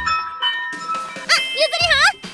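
A small brass bell hanging on a door jangles as the door opens, struck twice, the second strike about half a second in, and rings on for about a second. A woman's voice calls out near the end.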